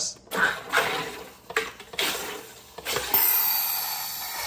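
Drinkmate water carbonator pressed three times, each press sending a burst of CO2 gas from a 20 lb tank into the water bottle. About three seconds in, a loud high hiss starts and slowly fades as the excess pressure vents, the sign that the bottle is already fully carbonated after only three presses on a full tank.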